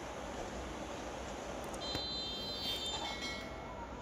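Steady traffic and engine noise heard from inside a car in slow city traffic. About two seconds in, there is a short cluster of high-pitched beeping tones that lasts just over a second.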